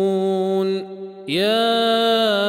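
A male reciter chanting the Quran in the Warsh narration, holding a long drawn-out vowel on a steady pitch. About a second in, the voice breaks off for a short breath, then the next long chanted note begins and holds.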